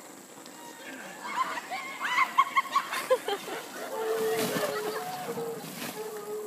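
Onlookers shrieking and yelling while a person shoots down a wet plastic slip-and-slide, with a splashing crash about four seconds in as the slider comes off a pallet ramp and hits the edge of an inflatable pool, and a long held yell after it.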